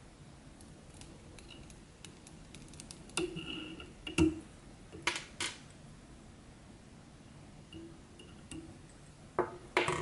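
Light metallic clicks of fly-tying tools as a whip finisher ties off the thread on the hook, with the thread being snipped. The sharp clicks come in a cluster about three to five and a half seconds in, with two more near the end.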